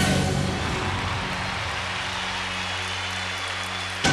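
A live band's final chord held and fading out under steady audience applause at the end of a gospel song.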